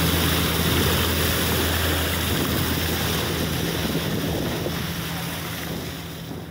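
Boat engine running with a steady low hum under the rush of water along the moving hull and wind on the microphone; the whole sound gradually fades toward the end.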